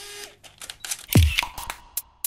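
Camera sound effects of an animated intro: a short shutter-like burst and several sharp clicks, then a deep drum hit about a second in as an electronic intro tune starts.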